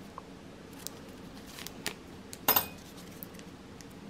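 Small craft tools and pieces handled on a tabletop: a few faint taps and one sharper metallic clink about two and a half seconds in, ringing briefly.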